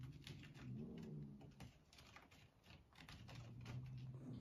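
Cat's claws raking a sisal scratching post: a rapid, irregular run of faint dry scratches and ticks. A short, low vocal sound rises and falls about a second in.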